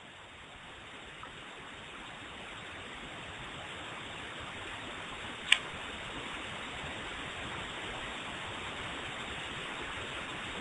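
Steady background hiss that slowly grows louder, with one sharp click about five and a half seconds in.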